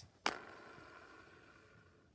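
Board-game spinner flicked by hand: a sharp snap as the arrow is struck, then the arrow whirring around, fading away over about a second and a half as it slows.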